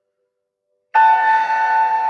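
A meditation bell struck once about a second in, after near silence. It rings on with several steady tones that waver slightly, marking the end of the meditation.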